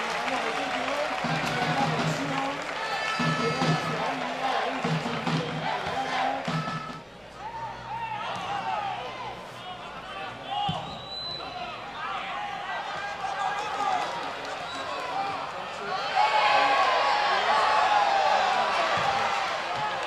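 Football stadium crowd, many voices shouting and chanting together, swelling louder for the last few seconds as an attack goes toward goal.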